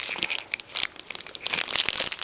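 Clear plastic packaging crinkling in irregular crackles as it is handled.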